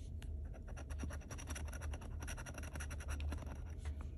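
Small metal scratcher scraping the coating off a lottery scratch-off ticket: a quick run of short, dry scratches.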